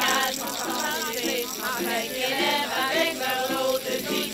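A small group of women singing a song together, with a ukulele strummed along.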